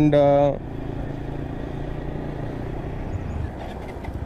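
TVS Apache RTR 160 4V's single-cylinder engine running steadily under way, with road noise, picked up by a microphone inside the rider's helmet.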